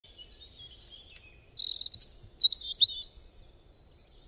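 Songbirds chirping and whistling: a run of short high calls with a rapid trill about a second and a half in, fading out near the end.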